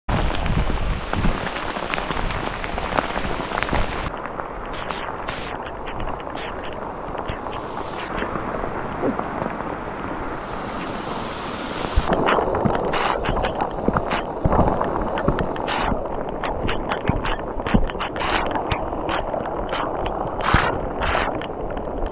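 Heavy rain falling steadily, with many sharp taps of drops striking the camera, more frequent and louder from about halfway through.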